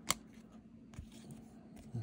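Baseball cards being handled and flipped through by hand: one sharp card snap just after the start and a fainter tick about a second in, over a faint steady hum.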